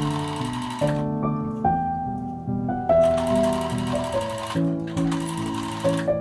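Electric sewing machine stitching in two runs: a short one that stops about a second in, then a longer one from about three seconds in until near the end. Background music plays throughout.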